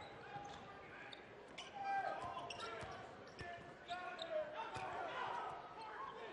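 Arena sound of a basketball game: a basketball dribbled on the hardwood court, with scattered short knocks and squeaks over the murmur of a crowd in a large hall.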